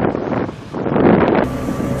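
Small fishing boat under way at speed: its engine running under wind buffeting the microphone and water rushing past the hull. The sound dips briefly about half a second in and turns brighter near the end.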